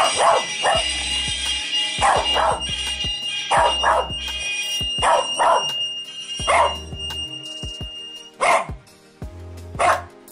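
Corgi barking: about ten short, sharp barks, mostly in quick pairs, every second or so, with the last ones more spaced out near the end. Background music with a steady high tone runs underneath and drops out shortly before the end.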